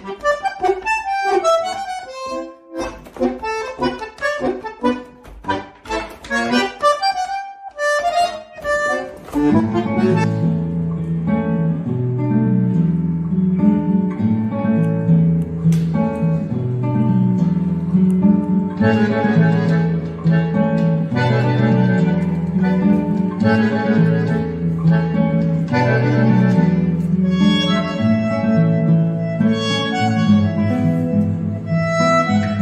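Music: for about the first nine seconds, short detached notes with brief gaps, then a bandoneon and a classical guitar playing slow, sustained chords over a low bass line.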